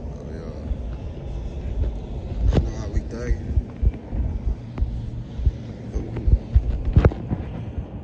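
A steady low rumble with scattered sharp knocks, the loudest about seven seconds in, and faint voices in the background.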